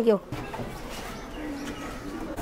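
A spoken word ends, then steady background noise with a faint, low, cooing bird call.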